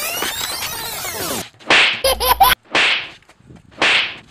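Dubbed fight sound effects: a sweeping swoosh, then three sharp whip-like swishes about a second apart, with a short squeal between the first two.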